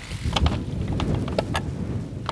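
Wind rumbling on the microphone, with several sharp clicks and taps scattered through it.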